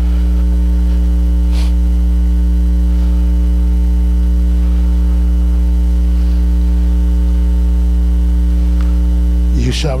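Loud, steady electrical mains hum: a low buzz with a ladder of overtones, unchanging throughout.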